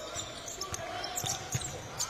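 A basketball being dribbled on a hardwood court: a few short bounces over the arena's background noise.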